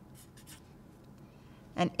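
Felt-tip marker writing letters on a white board: a few faint, short scratchy strokes, with a spoken word near the end.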